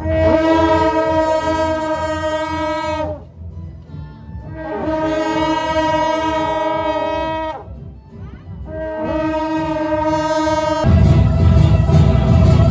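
Several long straight metal processional horns blown together in three long blasts, each held about three seconds, with a short scoop in pitch as each begins. About a second before the end, loud music with a heavy bass takes over.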